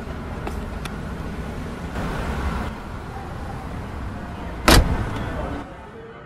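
A car's boot lid slammed shut: one loud thump near the end, over a steady low background rumble.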